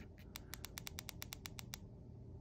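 Quick run of about a dozen light, evenly spaced clicks from the keypad of a Radioddity GD-77 handheld radio as a frequency is keyed in, stopping about three quarters of the way through.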